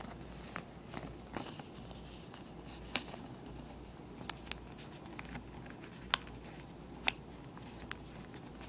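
Origami paper being folded and pressed flat by hand on a wooden tabletop: scattered soft rustles and small clicks, with sharper clicks about three, six and seven seconds in, over a faint low hum.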